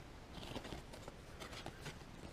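Faint rustle and light ticks of glossy baseball cards sliding against one another as they are flipped through by hand.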